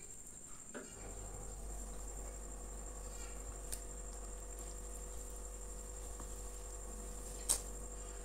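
Quiet hand-eating sounds: fingers tearing flaky laccha paratha and scooping it through curry, with small soft clicks and one sharp mouth click near the end as the food goes in. A steady high-pitched whine runs underneath, and a low hum comes in about a second in.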